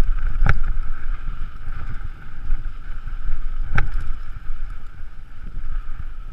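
Mountain bike rolling fast down a dirt singletrack: a rumble of tyres and frame rattle under wind noise on the camera microphone. Two sharp knocks from the bike striking bumps, one about half a second in and another near four seconds.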